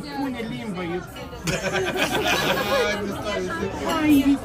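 Several voices talking over one another in casual chatter.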